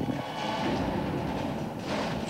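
Steady mechanical rumbling with a clatter running through it, from the film's sound effects.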